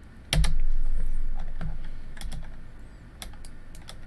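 Computer keyboard keys being pressed: a scattered run of separate keystroke clicks, with one louder thump about a third of a second in, as a scale value is typed into 3D software.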